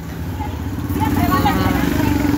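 A motor vehicle's engine running close by, a steady low drone with rapid even pulsing that grows louder about a second in and holds.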